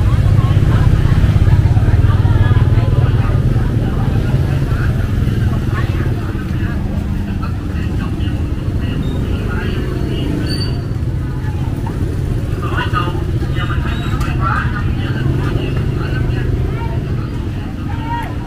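Motorbike engines running close by in a busy market lane, loudest in the first few seconds and then easing, with people talking in the background.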